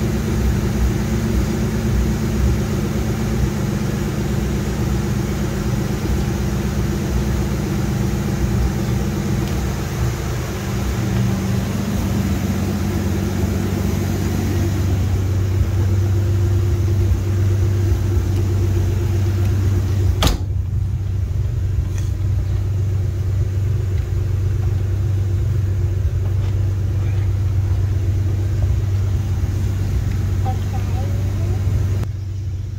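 1933 Dodge DP's flathead straight-six engine idling steadily, a low even rumble. A single sharp knock comes about twenty seconds in, after which the higher noise falls away and the idle sounds more muffled.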